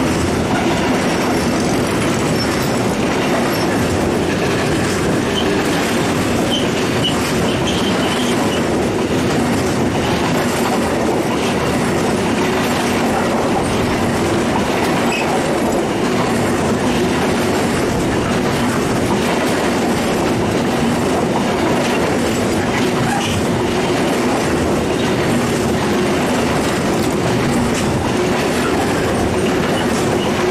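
Fully loaded intermodal freight wagons carrying semi-trailers rolling past close by: a loud, steady rumble and rattle of steel wheels on the rails.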